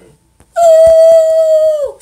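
A person's voice holding one long, loud, steady high note, dropping away at the end, sung or called out close to the phone.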